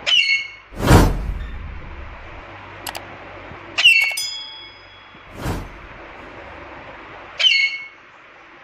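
Alexandrine parakeet giving three short, harsh calls a few seconds apart: one at the start, one near the middle and one near the end. Two loud, brief rushes of noise come between the calls, about a second in and at around five and a half seconds.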